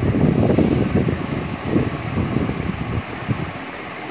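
Low, uneven rumble of air buffeting the microphone, like wind noise, easing off about three seconds in.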